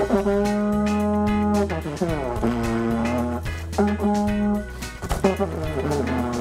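Plastic vuvuzela blown in a few long blasts: a held note for nearly two seconds, then a note that slides down in pitch, then shorter held notes.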